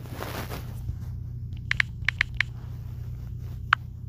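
Short, sharp clicks of typing on a keyboard: a quick run of about six keystrokes a little under two seconds in, then a single click near the end, over a steady low hum.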